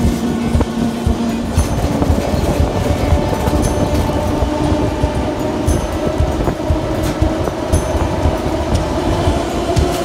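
Narrow-gauge electric train running on the rails, a steady rumble with irregular wheel knocks and clicks, mixed with background music that holds sustained notes.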